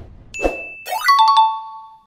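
Animated end-card sound effects: a whoosh, then a quick rising swish into a bright two-note chime, high then low, held for under a second and cut off short.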